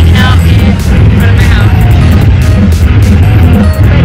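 Loud background music with a heavy bass and a steady beat, a voice running over it.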